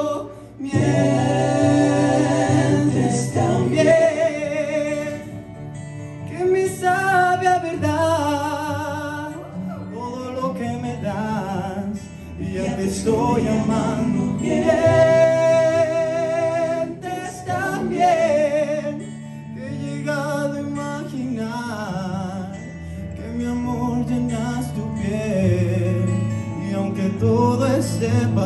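A young man singing a Spanish-language pop ballad live into a microphone, in long sustained phrases over a backing track of held low chords.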